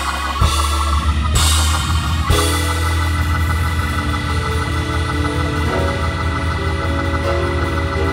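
Organ playing sustained chords over a strong deep bass, with the chord shifting twice in the last few seconds. Two bursts of bright, noisy sound ride over it in the first two seconds.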